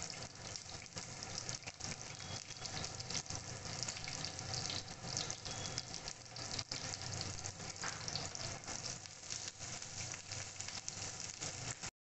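Sliced onions sizzling in hot fat in a non-stick frying pan: a steady hiss with many small crackles and pops as they start to fry.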